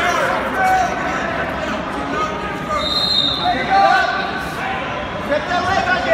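Many overlapping voices of spectators and coaches talking and calling out in a large echoing gym, with no single voice clear. A short high whistle-like tone sounds about three seconds in.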